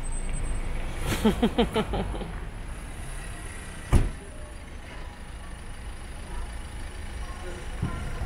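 Street noise with a steady low traffic rumble, a brief voice about a second in, and a single sharp thump about four seconds in.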